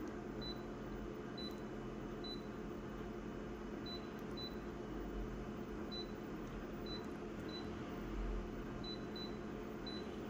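Photocopier touchscreen control panel beeping as its on-screen keys are tapped: about a dozen short, high key-press beeps at irregular intervals, over a steady low hum.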